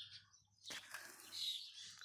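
Faint bird chirps, with a soft rustle starting about a second in.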